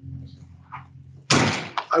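A faint steady hum, then a sudden loud thump about a second in.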